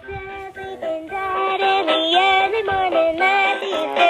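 Battery-powered talking toy bunny playing a song in a synthesized singing voice, a steady run of stepping notes through a small speaker.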